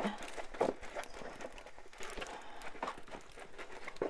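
Rolled diamond painting canvas being rolled back and forth under the hands on a table to relax its curl: a faint rustle with scattered light taps.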